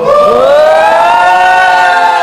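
Several voices hooting one long, loud teasing "oooh" together, rising in pitch at the start and then held.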